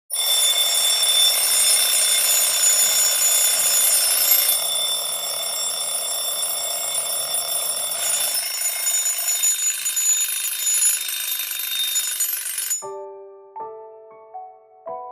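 An alarm ringing with a loud, high-pitched tone that cuts off suddenly near the end, as a few soft piano notes begin.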